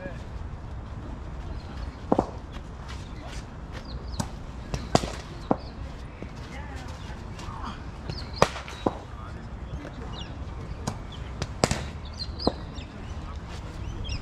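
Sharp, irregular cracks of cricket balls being struck and hitting nets in surrounding practice nets, about seven in all, the loudest about 2, 5, 8.5 and 11.5 seconds in. Under them run a steady low rumble and faint distant voices.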